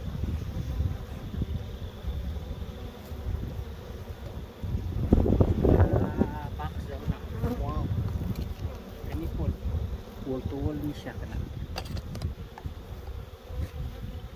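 Honeybees buzzing around open hives, with wind rumbling on the microphone. The buzz swells loudest about five seconds in.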